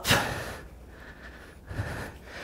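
A person's hard breath out from exertion during a bodyweight strength workout: a loud breathy rush right at the start that fades over about half a second, then a softer breath near the end.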